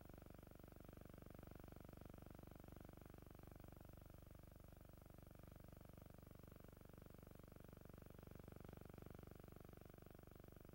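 Near silence from a missing film soundtrack: only a faint steady hum with a fast flutter, and no dialogue even though the actors' lips move.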